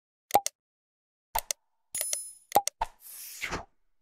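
Subscribe-button animation sound effects: a series of short clicks and pops as the buttons are pressed, a ringing ding about two seconds in, and a brief rush of noise near the end.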